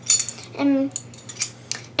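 A few light clicks and clinks from a small hard object being handled, with one short word from a boy's voice near the middle.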